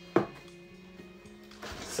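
A single sharp knock as the box is handled, over quiet background music with steady held tones.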